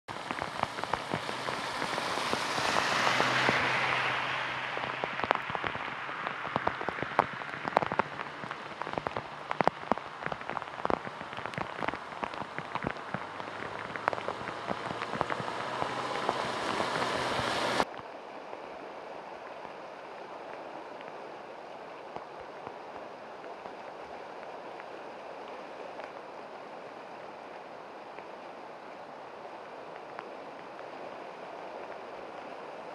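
Heavy rain pouring down, dense with sharp individual drop impacts, swelling louder a few seconds in. About 18 s in it cuts abruptly to a quieter, steady hiss of rain.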